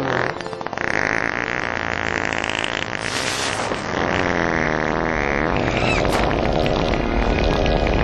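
A long, continuous comic fart sound effect, raspy and drawn out and growing louder toward the end, with film music underneath.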